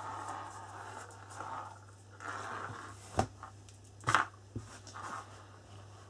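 A handmade paper-and-card concertina album being handled and slid across a table: soft rustling and scraping swishes, then a couple of light knocks a little after the middle.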